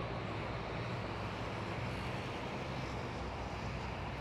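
Steady low rumble of outdoor urban background noise, even throughout with no distinct events.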